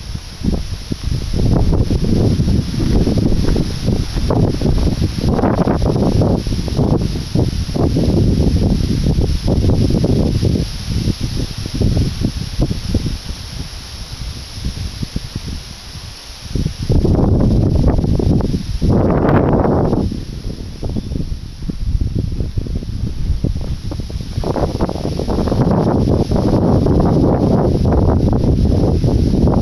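Wind buffeting the microphone in gusts, with tree leaves rustling; the gusts ease off briefly about halfway through and again a little later.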